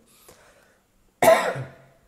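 A man coughs once, a short loud cough about a second in, after a brief quiet pause.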